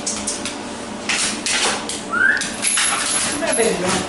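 Siberian husky moving about on a hard floor, with scuffles and light clicks, and one short rising whine about two seconds in. She starts to vocalize near the end, asking for more petting after it stopped.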